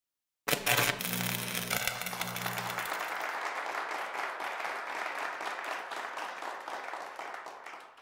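Audience applause: many hands clapping, starting about half a second in and slowly dying away near the end.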